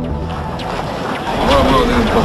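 Background music cuts off at the start and gives way to the noisy hiss of an outdoor street recording, with several people's voices talking from about one and a half seconds in.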